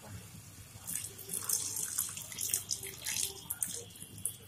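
Water poured in a stream into a kadai of cooked chicken masala, splashing into the gravy, starting about a second in.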